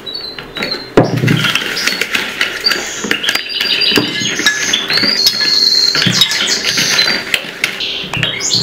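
Wire hand whisk beating an egg batter in a plastic bowl, a fast run of rattling, scraping strokes against the bowl's side, after a thump about a second in.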